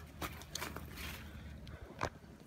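Faint footsteps on wood-chip mulch: a few light scuffs and clicks over a low steady background rumble.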